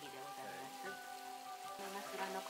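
Sukiyaki simmering in an iron pan, a steady sizzling hiss, with soft background music under it.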